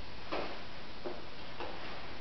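A few light, irregular clicks and taps from a plastic baby walker being pushed across a hard floor, over a steady hiss.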